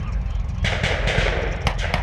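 Scattered blank small-arms gunfire from a battle reenactment: several sharp cracks, mostly in the second half, some in quick pairs, over a steady low rumble.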